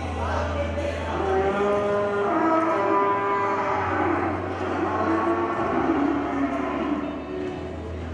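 A herd of calves mooing: several long, drawn-out calls, one after another and overlapping.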